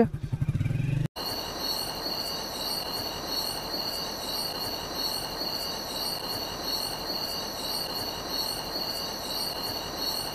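A motorcycle engine idling, cut off abruptly about a second in; then a steady chorus of night insects, several high unbroken shrill tones with a faint regular pulsing above them.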